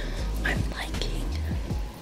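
A woman speaking softly, close to a whisper, over background music.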